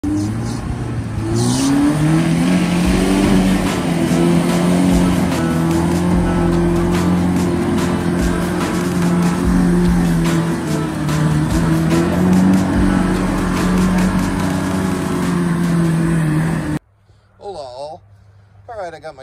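Lifted first-generation Toyota Tacoma's engine held at high revs while its tires spin through mud in donuts. The pitch climbs about a second and a half in, then stays high with small rises and dips, and the sound cuts off suddenly near the end.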